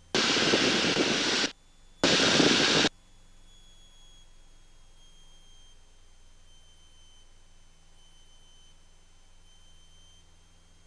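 Engine and airflow noise inside the cockpit of an Alpha 160A aerobatic trainer, heard as two loud bursts that cut in and out abruptly in the first three seconds. After that only a faint steady hum remains.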